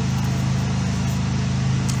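A steady low hum with no other sound.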